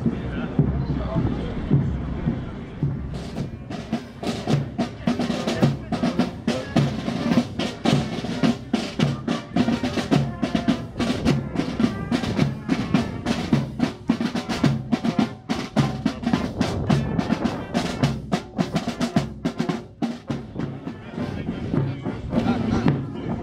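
Marching band's snare and bass drums playing a rapid marching cadence, starting about three seconds in.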